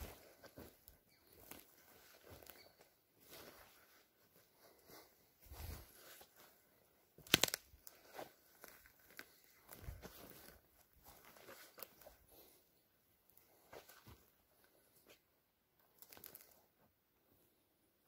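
Footsteps through forest undergrowth, twigs and brush crunching and crackling irregularly, with one sharp crack about seven seconds in as the loudest sound.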